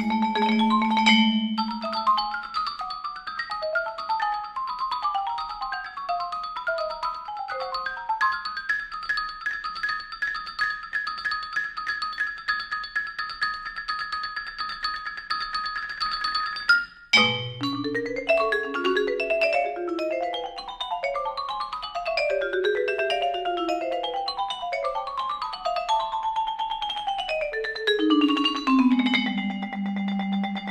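Marimbas and vibraphones played together with mallets in fast, evenly repeated notes. A very short break comes about 17 seconds in, after which the patterns rise and fall, settling onto a low held note near the end.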